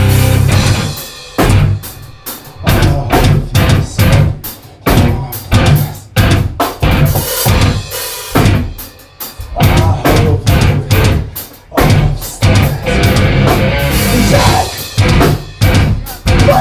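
Metal band playing live: a stop-start passage of short, sharp hits from the drum kit and guitars together, with brief gaps between, before the full band plays straight through again near the end.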